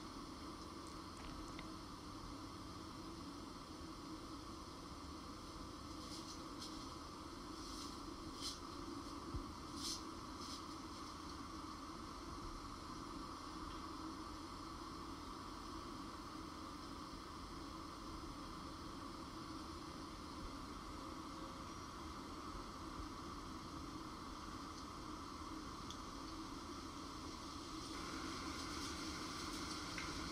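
Faint steady background hiss with a few soft clicks about a third of the way in.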